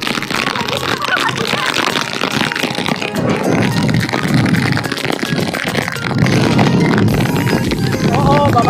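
Loud, steady rush of wind on the microphone and churning water as a banana boat is towed fast through choppy sea in heavy rain, with the tow boat's outboard engine underneath.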